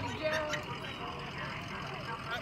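A pickup truck's engine running low and steady as it rolls slowly past, under the chatter of several voices.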